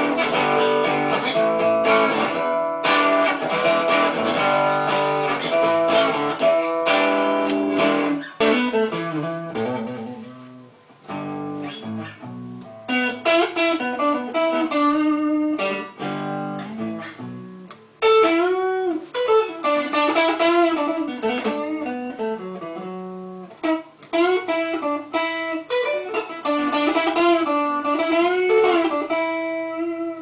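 Electric guitar, a Stratocaster-style solid-body deliberately left out of tune, played through an 18-watt amplifier: riffs and lead lines. In the second half the notes are bent up and down.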